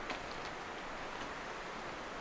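Quiet outdoor bushland ambience: a faint, steady hiss, with a couple of small ticks just after the start.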